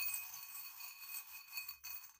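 A jumble of small metal charms jingling and clinking together and against a glass bowl as a hand stirs through them.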